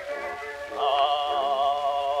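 Music from an Edison Blue Amberol cylinder record of the acoustic era playing back, with a long held note with vibrato starting about a second in.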